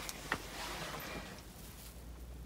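Soft rustling in a rabbit pen's wood-shaving and straw bedding, with one light click about a third of a second in.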